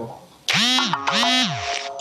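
Two loud animal calls in quick succession, each about half a second long, holding a pitch and then sliding down at the end.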